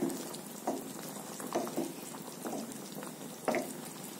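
Thick tamarind-and-coconut gravy with lentil balls simmering in a pot, with a steady bubbling haze and thick bubbles popping irregularly, about five in four seconds, as a wooden spatula stirs it. The gravy is in its final couple of minutes of boiling.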